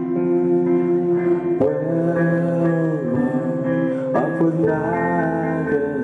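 A live rock band playing an instrumental passage, with guitars strumming sustained chords that change every second or two.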